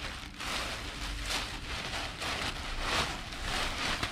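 Clear plastic packaging bag rustling and crinkling in a run of uneven swells as a pair of riding pants is pulled out of it.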